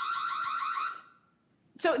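Ring Spotlight Camera's built-in siren sounding a loud, rapidly warbling electronic tone, which fades out about a second in as it is switched off.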